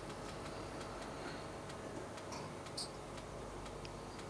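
Quiet room tone: a faint steady hum with scattered soft, irregular ticks.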